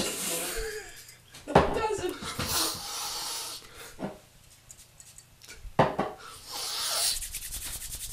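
Hands rubbing together and over the skin, a dry rasping rub that comes in spells with quick strokes near the end, mixed with short voice sounds.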